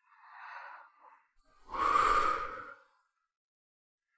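A person breathing in audibly, then a louder, longer sigh about two seconds in.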